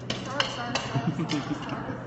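Indistinct voices with several sharp knocks or taps spread through the two seconds, over a steady low electrical hum.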